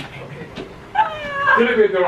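A cat meowing: starting about a second in, one drawn-out call that falls in pitch, with a shorter call after it.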